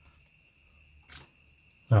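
A single short click of a trading card being flicked from the front of a handheld stack to the back, a little past a second in, in an otherwise very quiet stretch.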